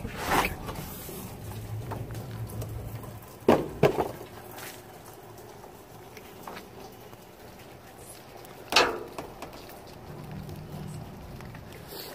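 Trash being handled in a steel dumpster: a few sharp knocks and bumps, one near the start, two close together a few seconds in and one about two-thirds of the way through, over low handling noise.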